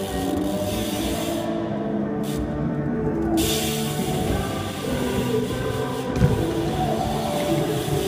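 Music with held, sustained notes.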